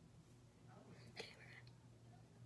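Near silence over a low steady room hum, broken about a second in by a brief faint whisper with a soft click.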